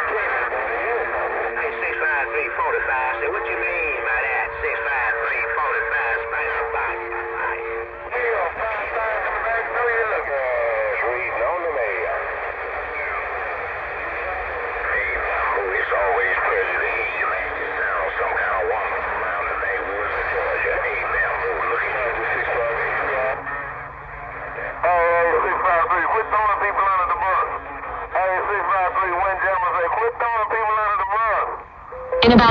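Cobra 148 GTL CB radio's speaker playing a crowded channel: several overlapping, hard-to-make-out distant voices over hiss, with steady tones through the first eight seconds. A stronger voice breaks through about 25 seconds in.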